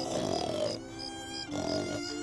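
Cartoon dog snoring in its sleep: two long snores about a second and a half apart, over soft sustained music and a steady high cricket chirp.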